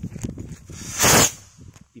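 Kwitis (Filipino stick rocket, red long-loaded type) igniting and taking off: a crackling fizz, then a loud rushing hiss about a second in as it launches, dying away shortly after.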